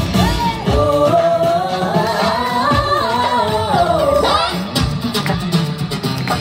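Pop song sung live into microphones with band music, played through the stage loudspeakers; the sung melody runs on without a break.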